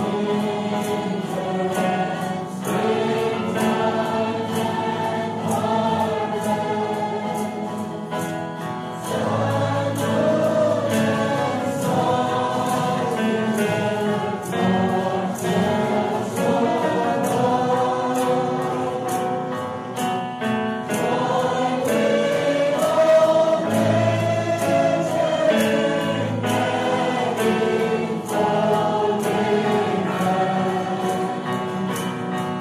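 A choir singing a hymn with musical accompaniment, steady throughout.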